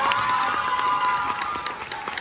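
Audience applauding, dense hand claps with voices cheering over them.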